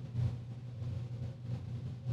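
A steady low hum with faint room background, no distinct event.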